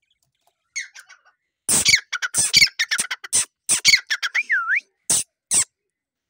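Dakhni teetar partridge calling: a run of loud, harsh, rapid call notes lasting about four seconds, with one whistled note that dips and rises near the end.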